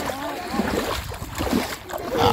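Wind rumbling on the microphone over shallow water, with short bursts of children's voices running through it.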